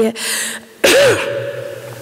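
A woman's single sharp cough into a close stage microphone, after a quick breath in. The cough comes about a second in and dies away over the following second.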